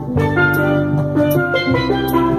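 Live reggae instrumental: a tenor steel pan plays the melody over electric guitar and hand-played congas and bongos.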